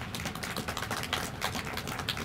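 Light applause from a small crowd: a dense, irregular run of hand claps.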